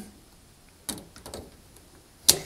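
Electrical connector being plugged into a washing machine's plastic door lock: one sharp plastic click about a second in, then a few softer ticks of the parts being handled.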